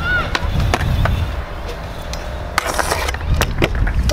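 Hard scooter wheels rolling over skatepark concrete with a steady rumble, broken by several sharp clacks and knocks and a short scrape about two and a half seconds in.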